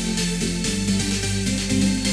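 Background electronic music with a steady beat over a sustained bass line.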